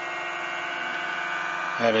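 Bedini-type pulse motor running steadily at speed: a steady hum with many even overtones from its transistor-switched coils and spinning rotor.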